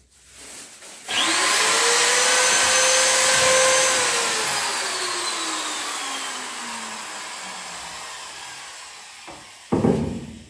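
An electric power tool's motor starts about a second in, whining up to speed, runs steadily for about three seconds, then is let go and winds down slowly, its whine falling in pitch as it fades. A short loud knock on wood comes near the end.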